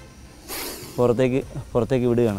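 Spectacled cobra hissing: one short breathy hiss about half a second in, followed by a man's voice.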